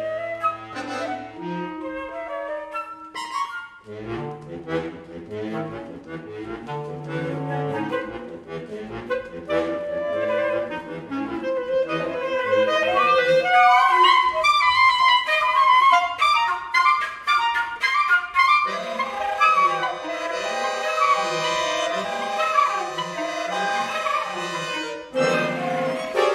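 Flute, clarinet and accordion playing contemporary chamber music together: quick, busy figures of many short notes, with a long held note sounding under them in the second half.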